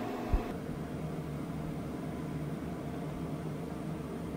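Steady fan-like machine hum with a background hiss in a small room, with one short low thump about a third of a second in.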